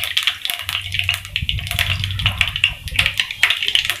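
Cumin and mustard seeds sizzling and crackling in hot oil, a dense run of small pops as they splutter during tempering (tadka).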